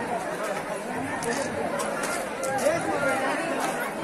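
Crowd of people all talking and calling out at once, a babble of overlapping voices.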